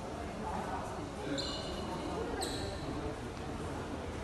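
Indistinct murmur of several voices in a large, echoing lobby. Two short, high-pitched squeaks stand out about a second apart, a little after the first second, the second one sliding slightly downward.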